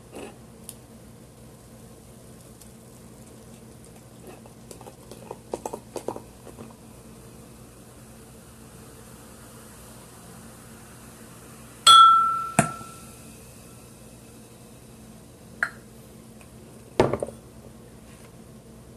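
Glass bottle and stemmed drinking glass clinking together: a few faint taps, then a sharp clink about twelve seconds in that rings briefly. A second knock follows just after, and a couple of duller knocks come near the end.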